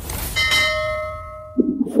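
A single bell chime, struck once about a third of a second in, ringing with several clear tones that fade away over about a second.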